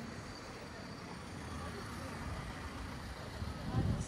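Busy town-square street ambience: passers-by talking and a low rumble of traffic, with a brief louder low rumble near the end.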